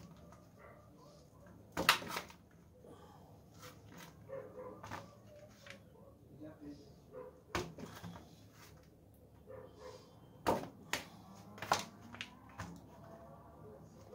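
A kitchen knife cutting through firm homemade soap and knocking down onto cardboard-covered table, with soap blocks handled and set down. A few sharp knocks are spread through, with quieter scraping and handling sounds between them.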